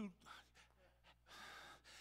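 A man's audible intake of breath, a short breathy rush of about half a second near the end, between phrases of speech; otherwise near silence.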